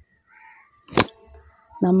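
A single sharp click about a second in, with faint short sounds before it, then a woman starts speaking near the end.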